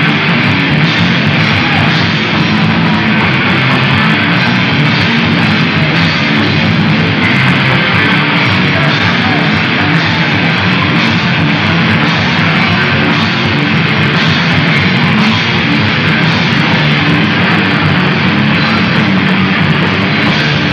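Punk-metal rock band playing live at full volume: heavily distorted electric guitar, bass guitar and a pounding drum kit, one dense steady wall of sound.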